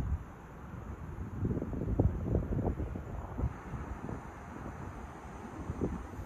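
Wind buffeting the microphone in uneven gusts, a low rumble that is strongest a second or two in.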